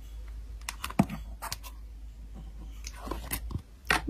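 Slime being played with: a handful of sharp, irregular clicks and pops from a purple clear slime worked over a white fluffy slime, over a low steady hum.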